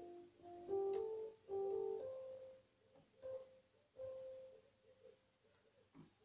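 Piano played slowly: a few short phrases of single notes and chords, each left to ring and fade. The playing stops about four seconds in, and the last notes die away.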